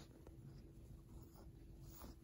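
Near silence with faint soft rustling, a hand stroking a puppy's fur against a blanket, over a faint steady hum.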